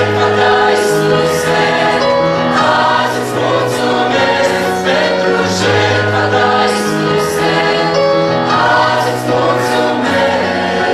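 Mixed choir of young men and women singing a Christian worship song in Romanian in harmony, with an electronic keyboard accompanying them.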